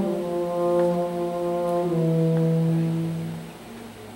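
A school wind ensemble playing a slow passage of sustained chords with brass prominent; the chord changes about two seconds in, then the sound fades away near the end.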